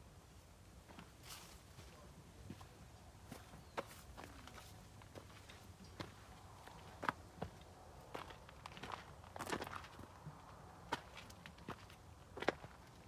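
Faint footsteps walking: a scatter of irregular soft steps and small clicks, busiest around three-quarters of the way through.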